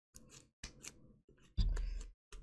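Homemade slime being squeezed and pulled off fingers: a few short, sticky crackling squelches, the loudest near the end with a dull low thump.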